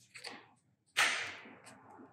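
AAA batteries pressed into a TV remote's battery compartment: a faint scrape, then about a second in a sharp snap as a battery seats, fading over about half a second.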